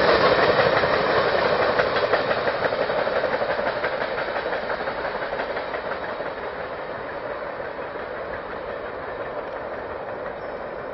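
Empty oil tank cars of a freight train rolling past on the rails with a steady wheel clatter that fades as the end of the train draws away.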